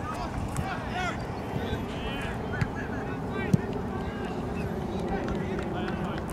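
Scattered shouts and calls from players and onlookers at an outdoor soccer game over a steady low background noise, with a sharp knock about three and a half seconds in.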